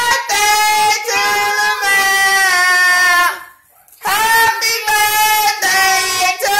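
A child and a woman singing together, long held notes in phrases, with a short break a little past halfway.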